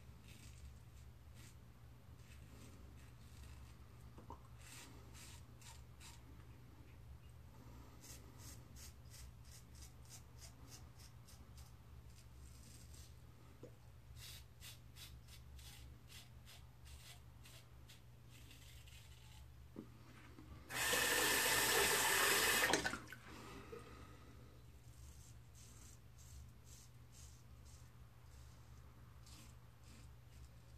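Faint short scraping strokes of a Blackbird safety razor through lathered stubble, a few per second in runs. About two-thirds of the way through, a tap runs into the sink for about two seconds, the loudest sound.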